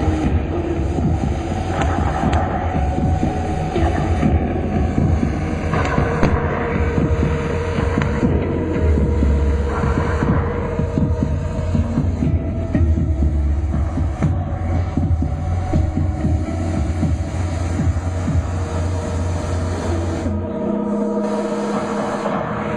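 Loud, deep electronic drone played live through a PA, its bass swelling and fading every few seconds under a noisy, grainy texture. About twenty seconds in the bass drops away and a higher, steadier tone takes over.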